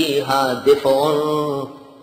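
A man reciting a Quranic verse in a melodic chant, drawing out the words 'fi-ha' in two long, wavering notes that trail off near the end.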